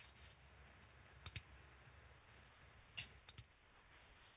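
A few faint computer mouse clicks over near-silent room tone: a quick pair about a second in, then three more around three seconds in.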